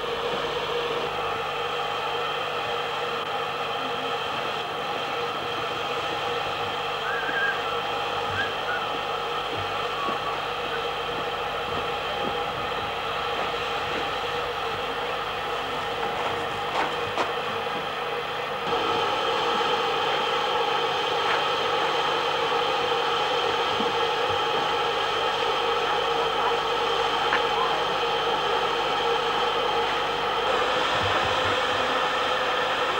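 A steady machine hum made up of several fixed tones, with a few faint clicks; it gets louder about two-thirds of the way through.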